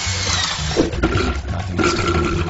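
Cartoon sound effects over a steady music bed: a high sweep falling in pitch near the start, then short pitched sounds about a second in and again near the end.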